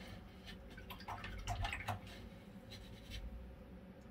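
Faint, scattered light clicks and taps over a low steady hum.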